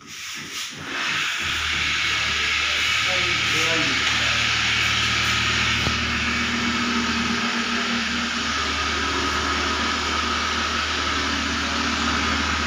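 A steady machine hiss with a low hum under it, starting about a second in and running evenly, with a short laugh around four seconds in.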